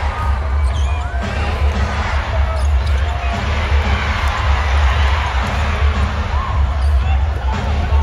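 Live basketball arena sound: sneakers squeaking on the hardwood court and a basketball bouncing, over crowd chatter and bass-heavy music from the arena sound system.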